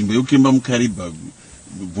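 Speech from a recorded conversation that stops about a second in, leaving a short stretch of faint recording hiss before the talking picks up again.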